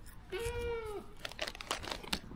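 A young goat kid bleats once, a short steady call lasting under a second, followed by a few light clicks.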